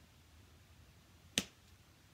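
A single sharp click a little over a second in, against quiet room tone.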